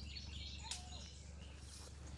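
Faint bird chirps in woodland over a steady low background rumble, with one sharp click about two-thirds of a second in.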